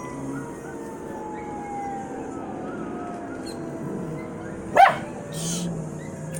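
A small, wet poodle-type dog gives one short, sharp bark about five seconds in. Underneath, a faint long tone slowly falls in pitch.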